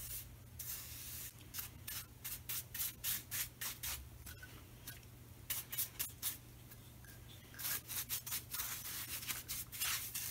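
Paintbrush bristles brushing clear shellac onto a small wooden wagon wheel in short, faint strokes, about three a second, in runs broken by pauses as the wheel is turned. A steady low hum runs underneath.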